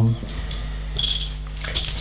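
Loose LEGO pieces clicking and rattling against each other as hands rummage through a pile of them, with a few sharper clicks toward the end.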